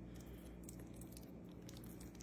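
Faint, soft squishing and small wet clicks of a garlic knot being pushed and dragged through a thick, creamy cheese dip, over a low steady hum.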